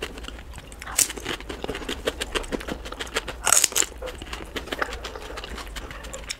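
Close-miked chewing and mouth sounds of someone eating Indian street food, sped up about threefold: a steady patter of small wet clicks, with two louder sharp bursts about a second in and around three and a half seconds in.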